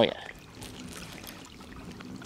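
Faint water trickling and lapping against a kayak hull, a low steady wash.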